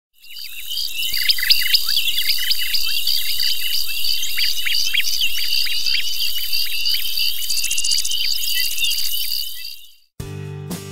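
Insects trilling steadily with many quick descending bird chirps over them, a nature ambience that fades in at the start and fades out near the end.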